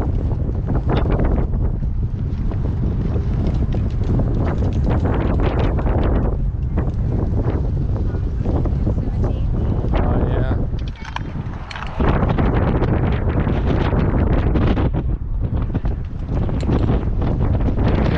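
Loud wind buffeting the camera microphone, a steady low rumble that eases briefly about eleven seconds in, then comes back suddenly.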